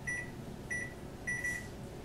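Microwave oven keypad beeping as its buttons are pressed to set the cook time: three short beeps, the third held longer.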